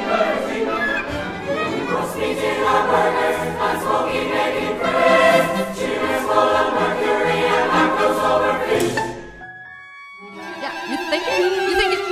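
A group of voices singing together in a contemporary choral piece. About nine seconds in it breaks off, and after a short dip a new ensemble piece starts with a held low note under a voice.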